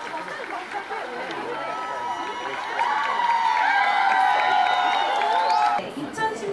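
A large stadium crowd: many voices chattering and calling out, swelling about three seconds in into sustained high-pitched cheering and screaming. The sound breaks off abruptly just before the end.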